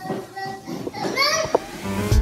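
A young child's voice: a short high-pitched squeal that bends up and down about a second in, followed by a single light knock, over quiet room sound.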